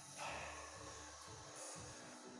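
A man's sharp, forceful exhale about a quarter-second in as he strains to bend a steel nail with his hands, over faint background music.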